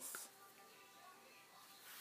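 Near silence: faint room tone with a few faint, steady background tones.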